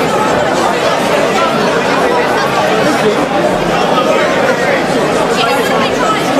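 Crowd chatter: many voices talking over one another, steady throughout, with no single voice standing out clearly.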